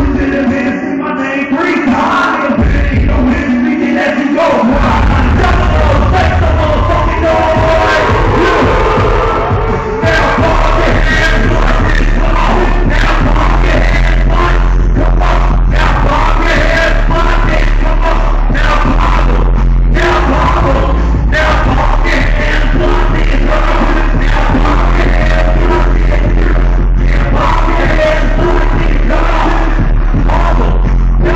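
Loud live hip-hop set through a venue PA: a heavy bass beat comes in about four seconds in and gets stronger around ten seconds, with rapped vocals and crowd voices over it.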